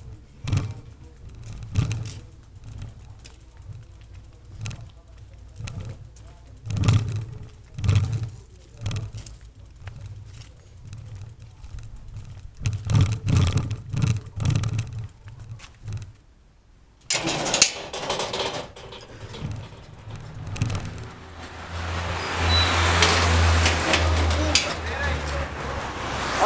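Irregular knocks and rattles from a bicycle-mounted action camera jolting as the bike moves over paving, then a car passing close by on the street, its engine and tyre noise building near the end.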